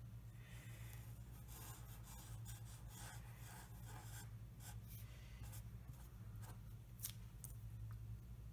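Black Sharpie marker drawing on paper: faint, irregular short scratchy strokes of the felt tip across the sheet, over a steady low hum.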